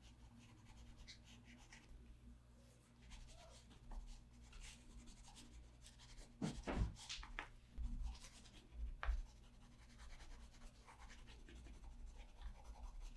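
Caran d'Ache Neocolor II water-soluble wax pastels scribbling on paper: faint, irregular scratchy strokes, with a few louder strokes and soft knocks in the second half. A faint steady hum sits underneath.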